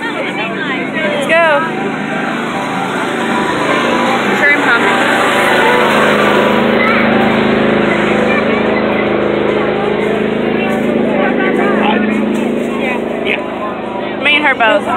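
Fairground background noise: people talking over a steady mechanical hum that grows louder about a third of the way in and holds.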